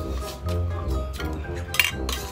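Background music with a steady bass beat, over spoons clinking against ceramic bowls during a meal, with the sharpest clink near the end.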